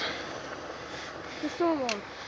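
A steady, faint background hiss, then a short spoken sound with a falling pitch from a person's voice near the end.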